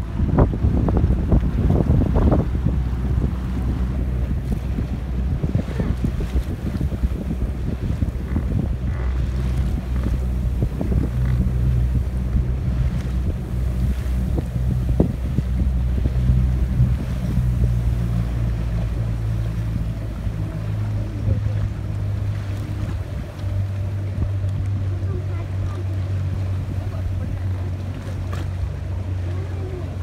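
A small motor boat's engine runs at low speed as a steady low drone, its pitch shifting slightly a little after halfway. Wind buffets the microphone in the first few seconds.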